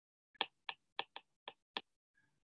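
Stylus tapping on a tablet's glass screen while handwriting: six light, sharp clicks about a quarter second apart.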